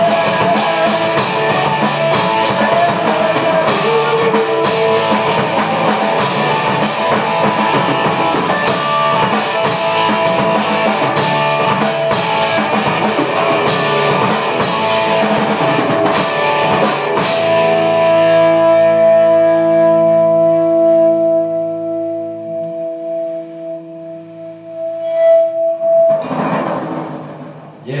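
Rock band of electric guitar, bass guitar and drum kit playing a song. About two-thirds of the way in the drums stop and a final chord is left ringing, slowly dying away near the end.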